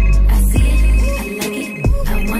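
Smartphone ringtone for an incoming call: a high electronic tone in rapid repeated pulses, pausing briefly about a second and a half in, over a music track with deep bass hits.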